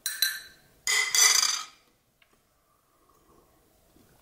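A metal spoon clinking and scraping against a ceramic mug while stirring chai: a short clink at the start, then a louder, ringing stretch of stirring about a second in that stops before the two-second mark.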